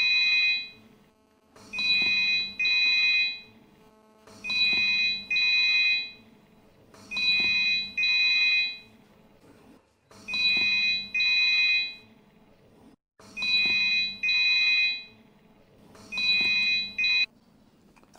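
Mobile phone ringing with a double-ring tone: pairs of short, high electronic rings come about every two and a half seconds, six times, and stop near the end.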